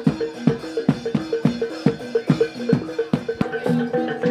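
Javanese barongan gamelan music: a repeating melody of struck metal notes over quick, frequent hand-drum strokes.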